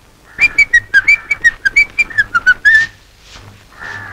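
A person whistling a quick tune: about a dozen short, clear notes that hop up and down in pitch over some two and a half seconds.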